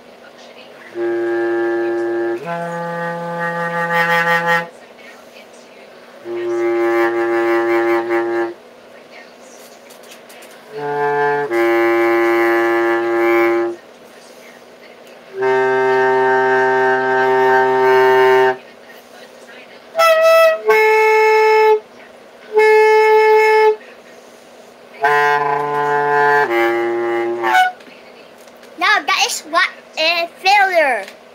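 Bass clarinet playing a slow line of single held notes, each lasting a second or two with short pauses between. Around twenty seconds in come a few louder, higher notes, the first of them wavering and unsteady.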